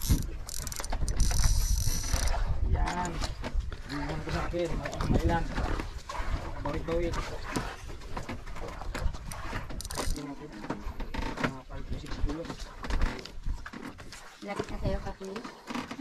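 Faint voices talking in the background over heavy low rumble and buffeting on the microphone, with a burst of hiss in the first two seconds.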